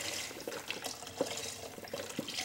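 Chicken broth pouring in a stream from a carton into a large stockpot of vegetables, the liquid splashing into the broth already in the pot.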